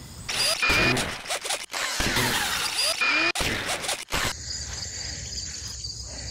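A loud rushing noise with a few short squeals runs for about four seconds and cuts off abruptly. After it, crickets chirr steadily.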